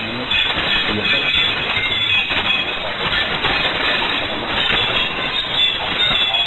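Shortwave AM reception of Radio Deegaanka Soomaalida Itoobiya on 5940 kHz through a software-defined receiver: the station's programme is buried in steady hiss and static and sounds thin, with faint high whistling tones over it.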